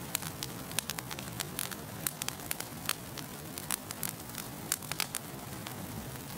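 Crackling fire sound effect: irregular sharp crackles over a steady hiss and low hum.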